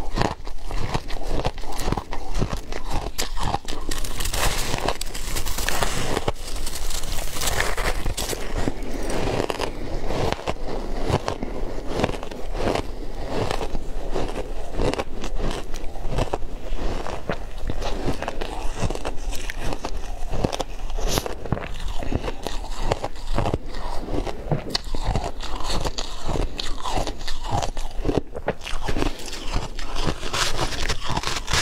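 Close-miked crunching and chewing of crumbly, powdery frozen ice: a continuous run of crisp bites and crackling chews.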